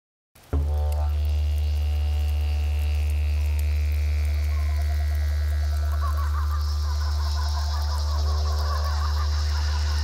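Didgeridoo playing a steady low drone, starting about half a second in, with wavering higher overtones coming in from about six seconds.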